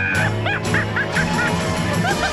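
Music: a sustained low note under a run of short, quickly repeating high notes that slide up and down, about four a second.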